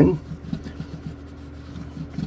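A cloth rubbing back and forth over the bare wooden fretboard and frets of a bass guitar, working conditioner into dry fretboard wood: a faint, irregular scratchy wiping.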